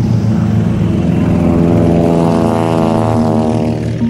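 Propeller aircraft engine running in a steady drone, its pitch bending slightly in the second half.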